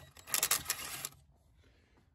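Brief metallic clatter of hand tools, a socket on an extension bar being handled, lasting under a second, then near silence.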